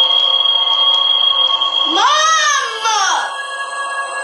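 Horror film soundtrack: a steady, high-pitched eerie drone, and about two seconds in a loud wailing cry whose pitch bends up and down several times for about a second before it stops.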